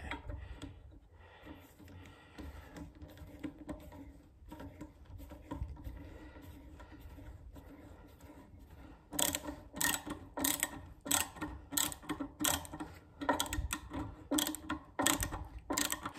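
Hand screwdriver driving screws to fasten a metal drawer pull onto a wooden drawer front, with faint scraping at first. From about nine seconds in come sharp clicks, about two a second, as the handle is turned.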